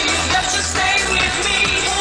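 Live Italo-dance music played loud, a female lead vocal over a steady bass beat.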